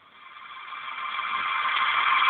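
Vehicle noise swelling steadily louder, as of a car drawing near, muffled and thin as heard over a phone line.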